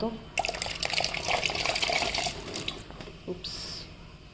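Water poured into a blue silicone ice cube mould, splashing for about two seconds and then tailing off, with a brief second trickle near the end.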